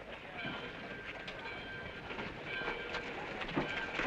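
Railway station sounds of a train standing at the platform: a steady noisy background with a few faint held tones and scattered short clanks and knocks.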